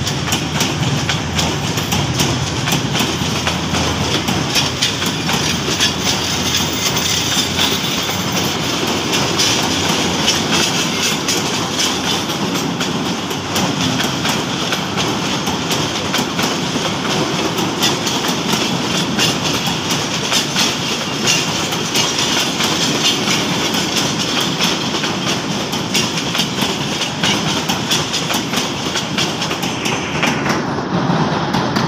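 Coaches of a diesel-hauled passenger train rolling past, a steady loud rumble with wheels clicking over the rail joints all the way through. A low hum at the start dies away in the first couple of seconds.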